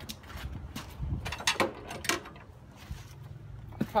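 Scattered metallic clicks and clinks of hand tools being handled, a 19 mm spark plug socket with its holder and extension, over a low rumble.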